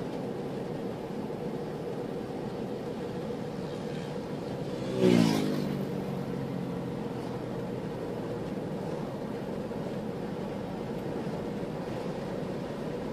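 Steady road and engine noise of a car driving at speed, heard from inside the car. About five seconds in, another vehicle passes close by: a brief loud rush whose pitch falls as it goes past, then fades.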